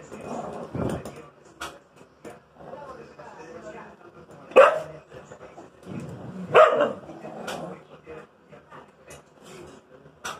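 A husky and a small white dog squabbling over a food plate: growling, with two sharp barks about four and a half and six and a half seconds in.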